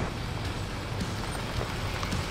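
Low, steady rumble of a pickup truck's engine running.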